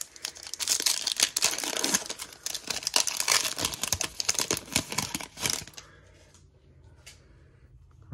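The foil wrapper of a Monopoly Prizm NBA trading card pack being torn open and crinkled by hand, a dense crackle of many small crinkles that stops about five and a half seconds in.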